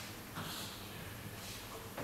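Chalk scraping a short stroke on a blackboard about half a second in, faint over a low steady room hum.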